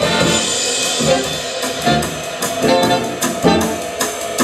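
Jazz big band playing live, with saxophones, brass, upright bass, piano and drum kit, swinging with a steady beat.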